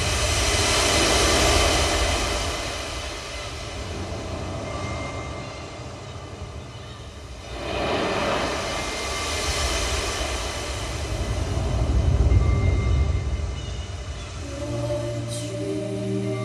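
Recorded ocean waves and sea wind played back loud through a pair of 15-inch JBL PA loudspeakers driven by a 50-watt tube amplifier, surging and ebbing with a deep low end. A sudden surge comes just before the middle. Near the end, sustained musical tones come in over the surf.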